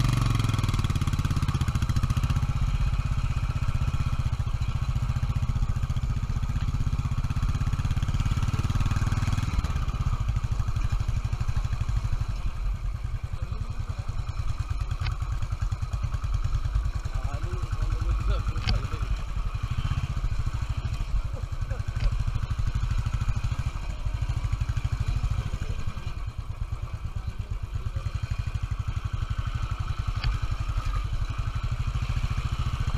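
Royal Enfield Electra 350 Twin Spark single-cylinder engine running as the motorcycle rides a dirt track, strong and steady for about the first ten seconds, then quieter and lower from about ten seconds in.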